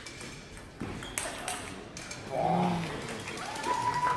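Table tennis ball clicking off bats and the table in a fast rally through the first two seconds or so. It is followed by a loud shout about two and a half seconds in and more voices near the end.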